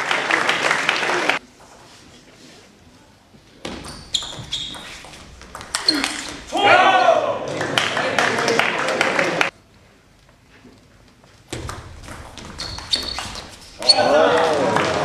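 Table tennis ball clicking off the rackets and the table in short rallies, around four seconds in and again near the end. Loud shouting from players or spectators at the start and in the middle, between the points.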